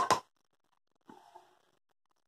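A short, sharp sniff at the mouth of an open jar of sun-dried tomatoes, smelling them. It is followed about a second later by a faint short sound.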